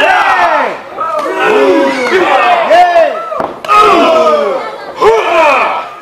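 Audience shouting and yelling, several voices calling out over each other in loud, drawn-out cries.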